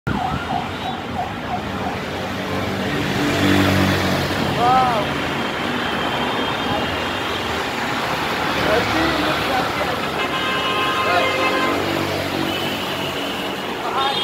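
Busy road traffic, with a siren whooping in short rising-and-falling glides; the clearest whoop comes about five seconds in.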